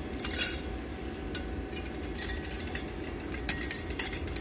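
Scattered light clicks and clinks as a silicon wafer, held in metal tweezers, is handled against a quartz wafer boat, over a steady low background hum.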